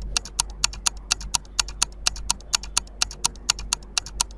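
Quiz countdown-timer sound effect: steady clock-like ticking, about four ticks a second, over a low steady hum.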